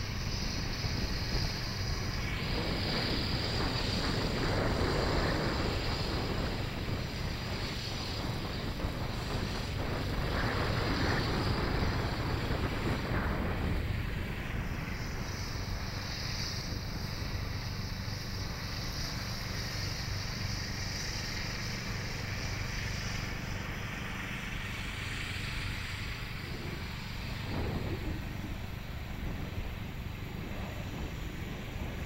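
Electric RC model plane's motor and propeller whine, high-pitched and shifting in pitch as the plane flies past, strongest about halfway through. Steady wind noise on the microphone runs underneath.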